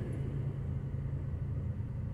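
Low, steady rumble of a car heard from inside its cabin.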